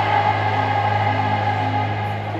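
Live rock band music in an arena between sung lines: a held chord over a steady low bass note, with no drum hits.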